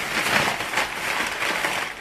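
Crinkly rustling of a bag or packaging being handled: a dense, continuous crackle.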